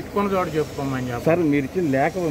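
Speech only: a man talking continuously and emphatically into press microphones.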